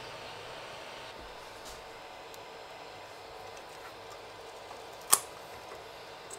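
Kingroon 3D printer running: a steady low whir from its fans, with faint steady tones over it. One sharp click comes about five seconds in.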